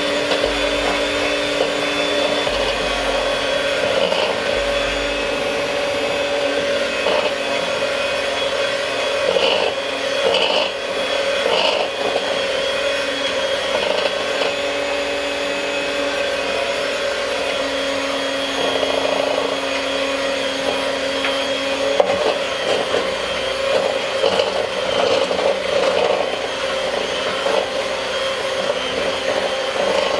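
Electric hand mixer running steadily, its beaters churning butter and powdered sugar for buttercream in a ceramic bowl. The motor's whine shifts in pitch now and then as the load changes.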